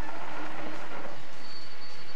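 Steady engine and wind rush from the live feed of a motor-vehicle camera at a bike race, with a faint high whine coming in about halfway.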